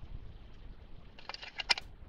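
Chrome trailer hubcap being fitted over the wheel hub: a quick run of light metallic clicks and taps as it meets the hub, starting a little over a second in.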